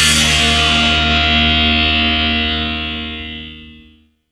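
The closing chord of a heavy metal song: distorted electric guitar and bass held and left to ring out, fading away to silence near the end.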